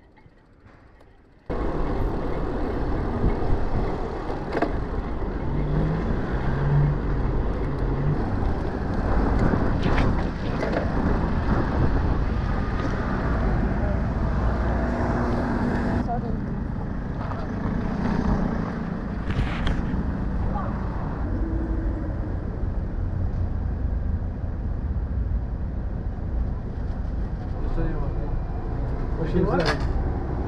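Loud, steady rumbling wind and street noise on an action camera's microphone. It cuts in suddenly about a second and a half in. People's voices come through at times, and there are a few sharp clicks.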